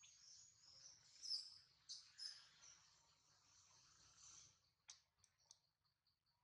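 Faint high-pitched chirps and squeaks from small animals, loudest in the first half, followed by three short sharp clicks about five seconds in.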